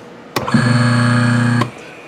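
Quarter-horsepower three-phase electric motor, run on 240 V single phase with a run capacitor across two phases, switched on with a click and humming steadily for just over a second before it is cut off with another click.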